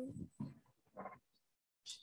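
A spoken hesitant "um" trails off at the start, then a quiet pause broken by two faint, brief sounds.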